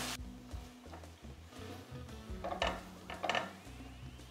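Soft background music, with a few short scrapes and clinks of a utensil stirring a vegetable and tomato-puree mixture in a stainless steel sauté pan, most of them in the second half.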